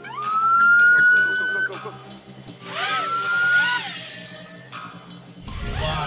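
Demolition site warning horn giving two blasts, each rising in pitch as it starts and then holding: a long one of under two seconds and a shorter one about three seconds in. This is a countdown signal ahead of a building implosion. A low-pitched sound comes in near the end.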